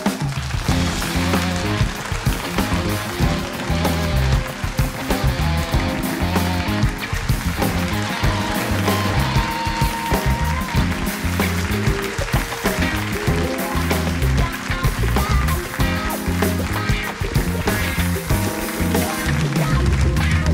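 The show's live house band of keyboards, electric guitar, bass guitar and drums playing walk-on music with a steady beat and heavy bass.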